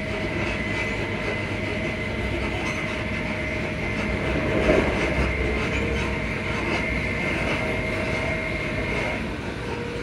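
Alstom Onix traction motors of a ScotRail Class 334 electric multiple unit whining with two steady tones over the rumble of the wheels, heard from inside the carriage. There is a brief louder clatter about halfway through, and the higher whine fades out near the end.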